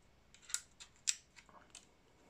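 Light clicks and taps from a plastic-cased lithium battery pack and its circuit board being handled and turned over in the hands, with two sharper clicks about half a second and a second in.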